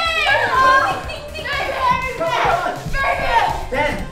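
Excited high-pitched women's voices, laughing and exclaiming over one another.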